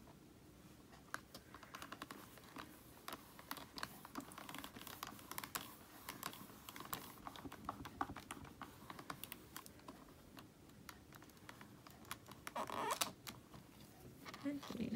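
Soft, irregular small clicks and taps as hands handle rubber-stamping supplies: ink pad, stamp and card. A slightly louder rustle comes near the end.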